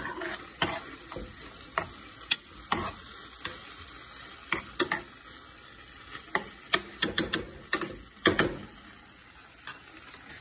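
Metal spoon stirring and scraping ground beef in sauce around a frying pan, with irregular clicks against the pan and a quick run of them about seven to eight and a half seconds in, over a steady sizzle.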